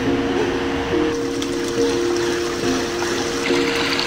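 Background music of held notes that shift every second or so, over a steady hiss of running water.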